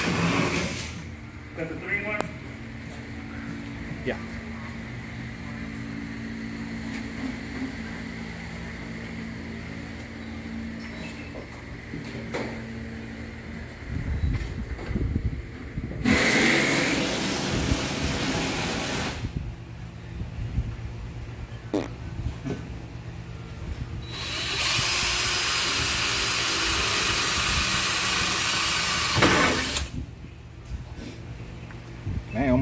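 Cordless drill boring through car-body sheet steel to drill out spot welds. A burst of a few seconds comes around the middle, then a longer steady run of about five seconds near the end with a thin high whine over it. A low steady hum fills the first half.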